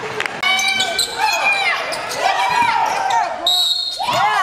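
Indoor basketball game sound: a ball bouncing on a hardwood court amid many short, sharp sneaker squeaks, with voices in the gym.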